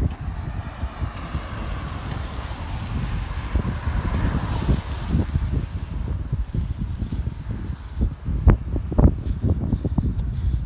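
Wind buffeting the phone's microphone, with a car passing on the road, its tyre noise swelling and fading over the first few seconds. A few sharper gusts or bumps on the microphone near the end.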